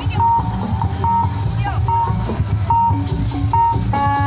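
Loud music with a short electronic beep repeating about once every 0.8 seconds, like a vehicle's warning beeper, over a steady low hum.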